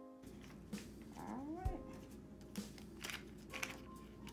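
Soft background music, with the crisp rustle and crinkle of paper banknotes being handled and sorted by hand, in a few short bursts in the second half. A brief rising sound comes about a second and a half in.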